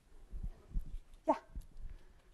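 A few soft, low thumps and bumps, with a single spoken 'yeah' a little past the middle.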